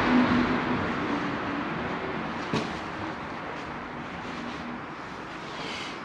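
Rushing vehicle noise with a faint engine tone, loudest at the start and fading away. A single click comes about two and a half seconds in.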